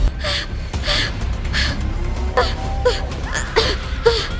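A young woman panting in quick, short gasps with small high whimpers as she runs off in fright, over steady background music.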